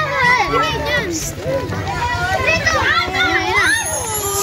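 Several voices, children's among them, talking and calling out over one another.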